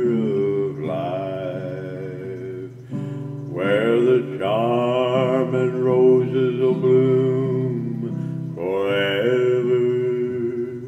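A slow gospel song: a man singing long, held notes with vibrato over guitar accompaniment, the phrases breaking every second or two.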